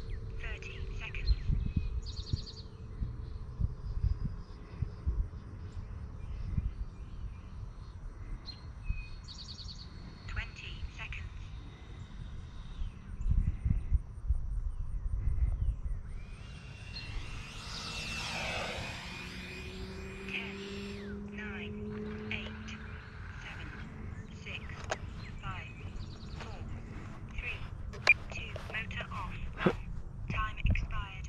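Outdoor ambience of birds chirping in short calls, over a ragged low rumble of handling noise from the camera being carried. A louder swelling noise rises and fades a little past the middle.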